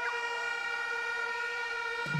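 A steady, siren-like tone with several overtones, held at one pitch, playing through a concert sound system.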